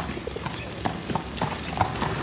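Sound effect of pony hooves clip-clopping on a hard street at a walk, about three hoof strikes a second.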